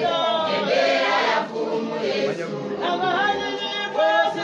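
A church congregation singing together in chorus, many voices at once.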